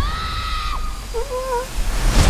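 A sudden high-pitched cry held steady for just under a second, then a shorter, lower wavering cry about a second later.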